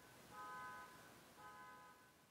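Near silence with a faint pitched electronic tone sounding twice, each about half a second long and about a second apart.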